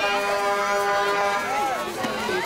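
A vehicle horn sounding one long, steady blast that stops just before the end, with voices over it.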